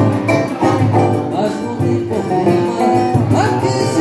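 Live acoustic music: a cavaquinho and a guitar strummed and plucked together, with a man singing along.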